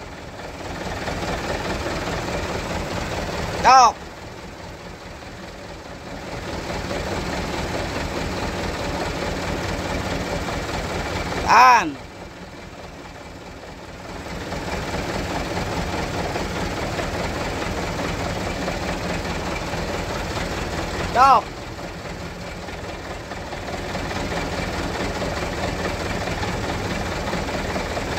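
Car engine idling steadily, left running while the brakes are bled, its noise growing louder for several seconds at a time between calls. Short loud shouts of 'tahan!' (hold) and 'stop!' to the helper on the brake pedal come about every 8 seconds, the loudest sounds in the stretch.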